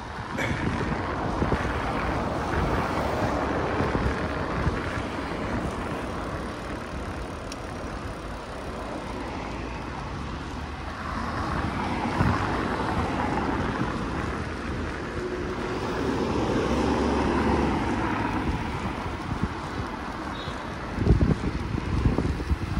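Road traffic passing on a busy main road, with wind noise on the microphone from riding. Several vehicles swell past and fade over a steady low rumble.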